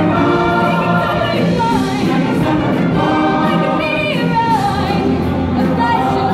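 High school show choir singing in full voice over a live band, with a high voice sliding between notes above the ensemble.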